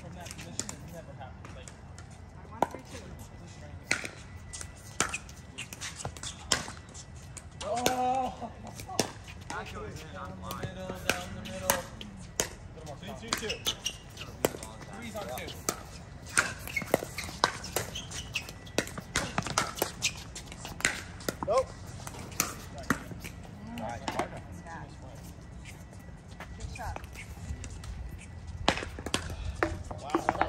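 Pickleball paddles hitting a hard plastic ball in a doubles rally: sharp pops at irregular intervals, with players' voices calling out now and then.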